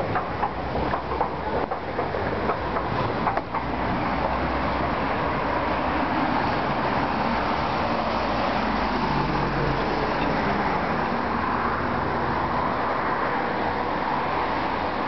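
Steady, even road traffic noise, after a run of light clicks and taps in the first few seconds.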